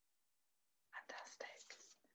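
Near silence for about a second, then faint whispered speech from a woman.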